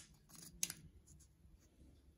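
Faint handling clicks of a white plastic template ring being fitted against a metal lens bayonet mount. The sharpest click comes just over half a second in.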